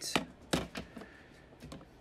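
Hard plastic PSA grading slabs clicking and tapping against each other as they are handled: a few sharp clicks in the first second, then fainter ones.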